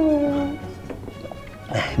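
A person's voice: one long, drawn-out moan that falls slowly in pitch and ends about half a second in, with another voice starting up near the end.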